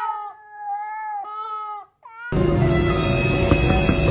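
Three long, steady wailing squawks, the first falling slightly in pitch at its start, followed by a short rising squeak. About two seconds in, loud background music takes over.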